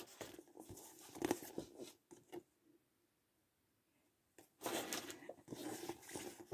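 Faint rustling of printed paper card toppers being handled and leafed through by hand, in a few short scattered bursts, with a clearer patch of rustling near the end.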